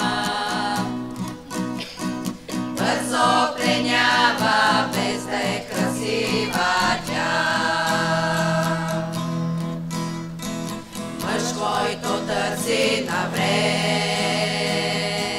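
A women's vocal group singing a song together, accompanied by a strummed acoustic guitar.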